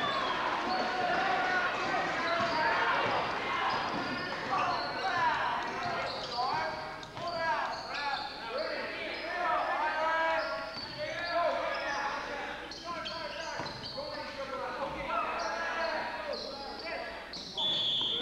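Basketball game on a hardwood gym court: the ball bouncing and sneakers squeaking on the floor, over the voices of the crowd. Near the end a referee's whistle blows.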